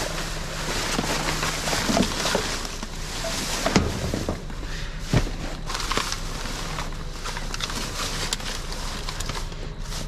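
Black plastic garbage bags rustling and crinkling steadily as gloved hands dig through them, with a few sharp knocks of items shifting inside the dumpster.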